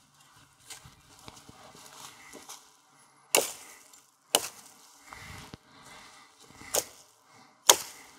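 Axe chopping the side branches off a felled western hemlock: four sharp strokes in the second half, each a second or two apart, with a fainter knock near the start and rustling between.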